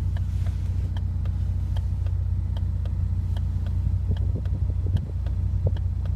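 Car engine idling steadily, a constant low hum, with faint evenly spaced ticks about two or three times a second.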